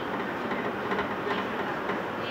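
Electric commuter train running at speed, heard from inside the carriage: a steady rumble of wheels on rails with a few faint clicks.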